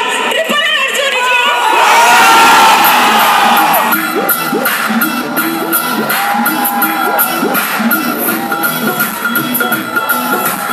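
A crowd cheering and shouting, loudest about two seconds in. About four seconds in, a dance track with a steady beat starts over the sound system for a stage performance.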